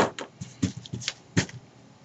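Scissors snipping through paper: a run of short, sharp snips, the first one the loudest, about half a dozen in the first second and a half.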